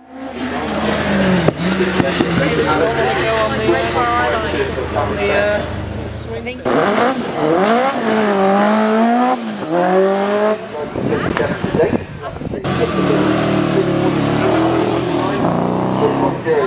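Race car engines revving hard as the cars accelerate along the course, their pitch climbing and falling back at each gear change. The sound comes in three stretches, cut together, with sudden changes about six and a half and twelve and a half seconds in.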